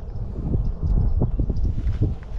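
Wind buffeting the microphone, an uneven low rumble with a few faint knocks.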